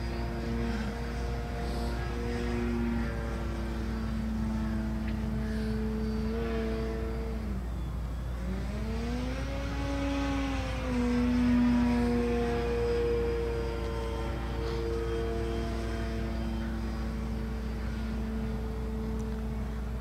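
RC Tiger Moth model biplane's motor droning steadily in flight overhead. About eight seconds in its pitch drops sharply, then climbs above the cruising note and is loudest for a few seconds before it settles back to a steady drone.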